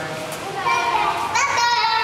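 A young child's high-pitched, wordless vocalizing: one held note that starts about half a second in, climbs, and wavers near the end.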